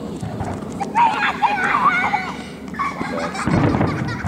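Aerial fireworks bursting, with a low boom about three and a half seconds in, amid the voices and shouts of onlookers.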